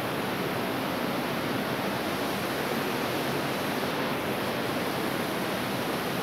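Waterfall rushing steadily: a constant, even wash of falling water close by.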